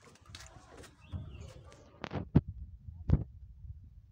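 Three dull thumps, two close together about two seconds in and one more about a second later, over a low rumble of the phone being handled.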